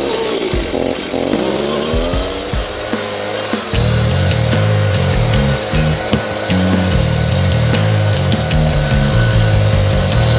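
Two-stroke engine of a Stihl BG 56C handheld leaf blower running. Its pitch falls and rises over the first few seconds, then holds steady. Background music with a changing bassline plays over it.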